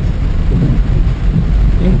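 Inside a car driving through heavy rain: a steady low rumble of engine and tyres on the wet road, with the even hiss of rain on the windshield and roof.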